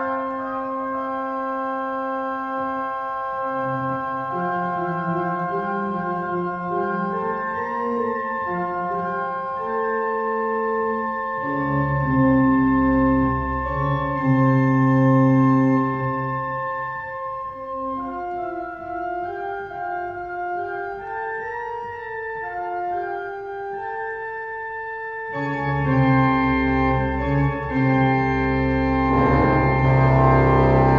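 Church organ playing a slow improvisation in sustained, overlapping chords. Deep pedal bass comes in about a third of the way through, fades, and returns strongly near the end.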